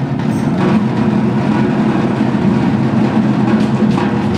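School percussion ensemble playing: a loud, dense, sustained rumble of drums with no separate strokes standing out.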